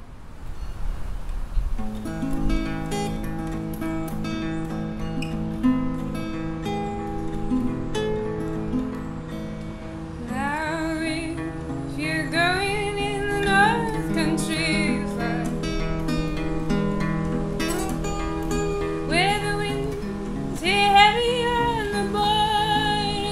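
Solo acoustic guitar starting about two seconds in with a plucked folk accompaniment, joined by a woman's singing voice about halfway through.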